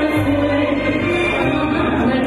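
A female vocalist singing into a microphone over instrumental backing music, holding long notes that step from one pitch to the next.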